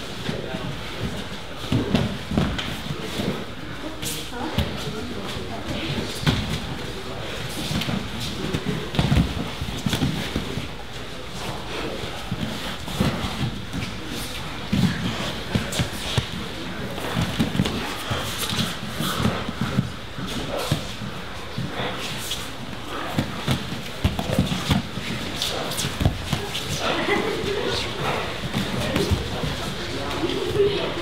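Grapplers rolling on foam mats: frequent short thuds and scuffs of bodies hitting and sliding on the mat, over indistinct chatter from many people around the room.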